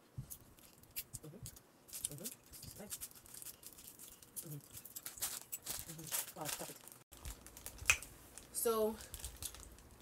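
Plastic snack wrapper crinkling and rustling in short, irregular crackles as it is handled, with soft mouth sounds and a short voiced sound about nine seconds in.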